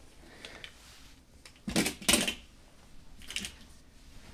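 Clear plastic coin capsules holding copper rounds clicking and clattering as they are handled and set down on a felt-covered table, in a few short bursts, the loudest about two seconds in.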